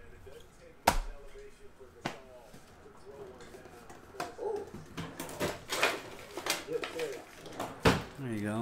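Objects being handled at a desk: a sharp, loud knock about a second in and another about two seconds in, then a quicker run of taps and knocks in the last few seconds.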